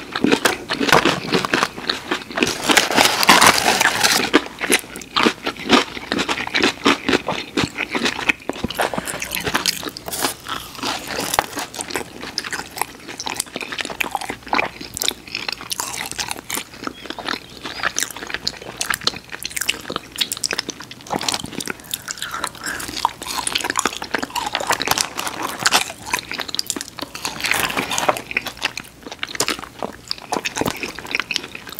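Close-miked chewing and crunching of two people eating fried boneless chicken wings and cheese fries, a dense run of small irregular crackles and bites, loudest a few seconds in.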